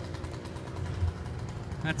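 Ford pickup truck's engine running steadily at low revs, a low even rumble.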